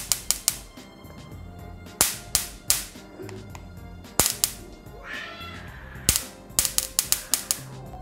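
Repaired electric mosquito swatter, run off a 3.7 V laptop battery cell, arcing across its mesh in a series of sharp, loud snaps. They come singly and in pairs at first, then in a quick run of about six near the end. The strong discharge shows the swatter's high-voltage board is firing well again.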